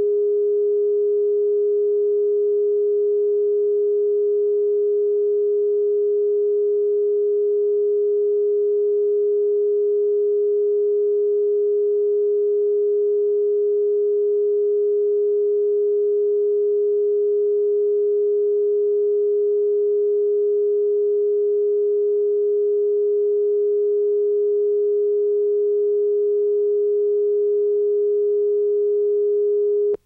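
Steady broadcast line-up tone: one unbroken sine tone at a constant pitch and level, played with colour bars at the head of a videotape. It cuts off suddenly at the very end.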